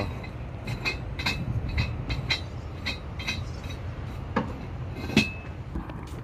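Sharp metallic clinking strikes repeating about twice a second, over a low steady rumble.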